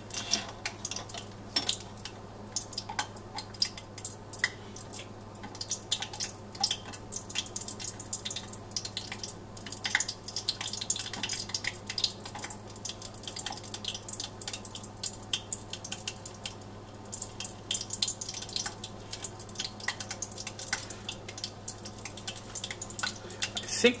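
Mineral oil heated just past 100 °C crackling with many small, irregular pops as trapped moisture boils out of submerged laser-sintered nylon pieces.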